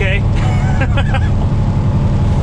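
Peterbilt semi truck's diesel engine running steadily at highway cruise, heard from inside the cab as a loud, even low drone. The exhaust leak on the driver's side stack has been repaired, so the exhaust no longer sounds obnoxiously loud.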